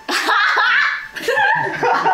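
Young women laughing, in loud bursts that waver in pitch.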